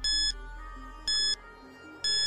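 Countdown timer sound effect beeping once a second: two short, high beeps over soft background music.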